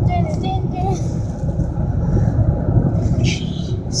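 Car cabin noise while driving: a steady low rumble of engine and road.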